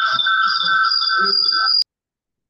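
Steady high ringing tones with a voice underneath, coming over a video call from an unmuted participant's microphone. Near the end they cut off abruptly with a click, leaving dead silence.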